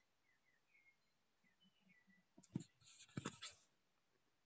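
Near silence, broken about two and a half seconds in by a few faint short clicks and a brief scratchy rustle.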